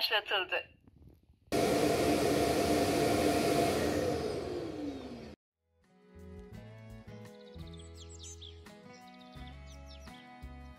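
Wiami FX11 Plus self-emptying dock running its suction motor to empty the robot vacuum's dustbin: a loud steady whir for about four seconds that winds down with a falling pitch and then stops. Quieter background music follows.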